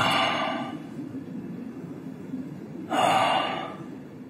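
A man breathing heavily: two loud, gasping breaths about three seconds apart.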